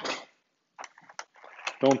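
A few faint, short clicks and taps as a foil baking tray of ravioli is handled and uncovered on a wooden cutting board.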